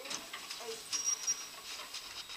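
Lift doors opening and footsteps stepping out of the lift, a series of light clicks and ticks, with a short high beep about a second in.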